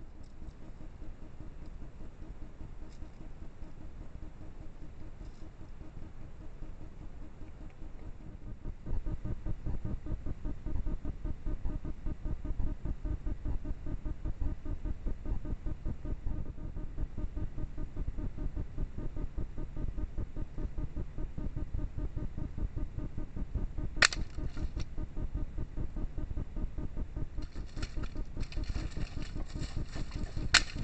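Low rumbling background noise picked up by a night-vision trail camera's microphone, growing louder about nine seconds in. A single sharp snap comes about 24 seconds in, and rustling in dry leaf litter follows near the end.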